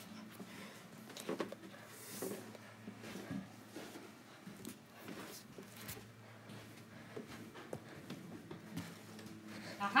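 Handling noise of a tablet being carried through a quiet house: scattered soft knocks and rustles over a low steady hum.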